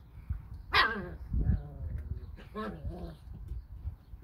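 Young puppies barking: a loud short bark about a second in and a weaker one just before three seconds, with low bumping and rustling between them.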